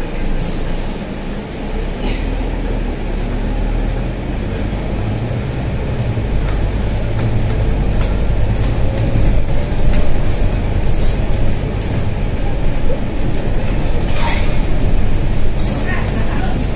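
Scania N320 city bus under way, heard from the driver's cab: engine and drivetrain rumble that grows louder from about six seconds in as the bus picks up speed.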